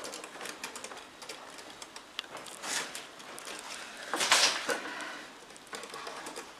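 Small handling noises of screwdriver and wire work at a plastic terminal block: scattered scrapes and clicks, with the loudest rasp about four seconds in.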